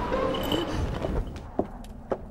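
Snowstorm wind with a few held tones fades out. Then come two single footsteps on a wooden floor in the second half.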